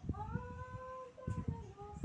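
A long, high-pitched drawn-out vocal call that rises slightly and then holds, followed near the end by a shorter, lower call, with a few faint knocks underneath.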